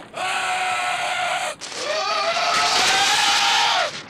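Screaming on a horror-film soundtrack: two long, wavering cries, the second starting about a second and a half in.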